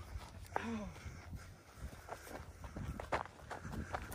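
Footsteps on dry, mowed grass and stubble: a faint, irregular patter of steps, with a brief wordless voice sound about half a second in.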